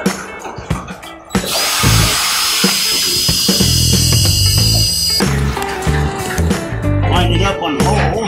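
Cordless drill boring a pilot hole into a wooden dock piling, running steadily for about four seconds from about a second and a half in with a high whine. Background music with a beat plays throughout.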